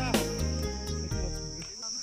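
A steady, high-pitched insect drone, with background music fading out over it in the first second and a half.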